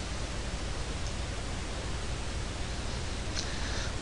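Steady hiss of background noise from the recording, with no other sound over it.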